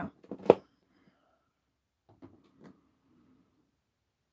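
A heavy plastic storage bin being handled onto a digital scale: one sharp knock about half a second in, then a few soft plastic knocks and rustling about two seconds later.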